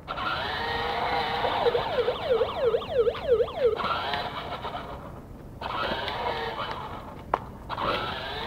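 Battery-powered children's ride-on toy motorcycle driving, its electric motor whirring under a warbling electronic sound effect that swoops up and down about three times a second. The sound dips briefly a couple of times partway through, as if the foot pedal were let up.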